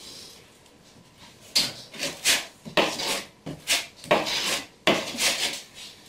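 Trowel scraping mortar onto cement board: a quiet start, then a run of short scraping strokes, roughly two a second, beginning about a second and a half in.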